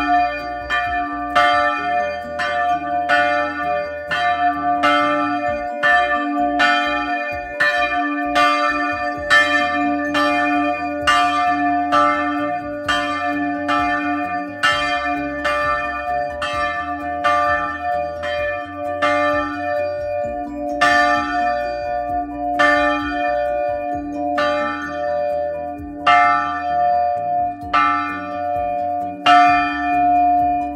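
A historic church bell in a wooden bell frame, rung by hand with a rope, swinging so its clapper strikes about once a second, each stroke ringing on into the next.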